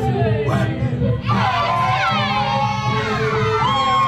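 A group of voices shouting and whooping together in falling calls, growing fuller about a second in, over folk music with a steady low bass.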